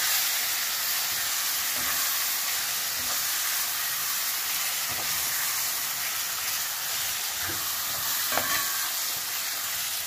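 Kidneys sizzling in hot curry oil in a pot as they are stirred with a metal spoon, which knocks against the pot a few times, most clearly in the second half.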